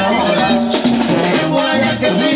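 Mexican banda brass band playing live: trombones and tuba over a steady beat of drums and congas.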